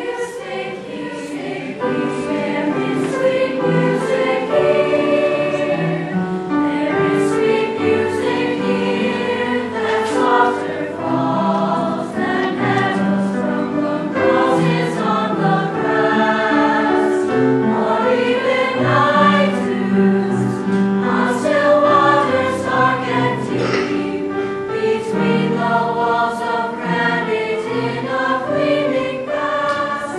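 Youth choir of girls' and boys' voices singing a choral piece in parts, the held notes shifting every second or so.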